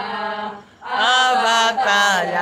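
Women singing a church hymn together without instruments, in long held notes. They break off briefly under a second in, then come back in louder.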